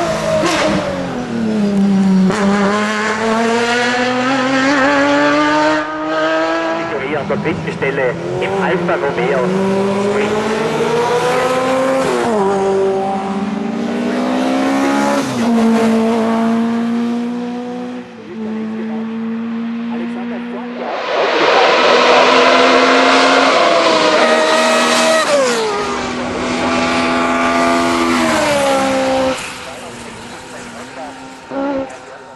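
Racing car engines run hard under full throttle as several hillclimb cars pass one after another. The pitch climbs through each gear and drops at every upshift. The loudest pass comes a little past the middle.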